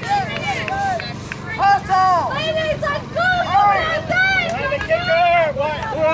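Several high-pitched voices shouting and calling out in quick succession, words unclear, over a steady low hum.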